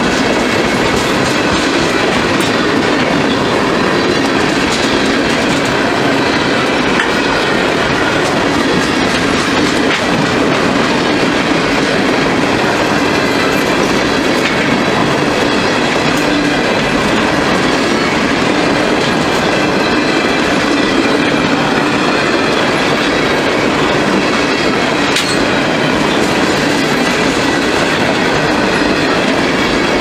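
Freight train of refrigerated boxcars rolling past: a steady, loud rumble of steel wheels on rail, with a few clicks as the wheels cross the rail joints.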